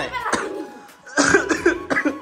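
A woman's voice in two short cough-like bursts, the second about a second in, over faint steady background tones.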